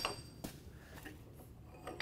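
A single metallic clink at the start with a short high ring that fades within about half a second, then a few faint taps: a steel weld test strap being handled and set into a bend-test jig.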